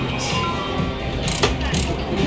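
Casino floor background: music and distant chatter mixed with electronic slot machine tones, with two sharp clicks about a second and a half in.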